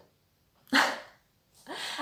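A woman's short laugh: one loud, breathy burst just under a second in, then a softer breathy sound near the end as she goes back into speaking.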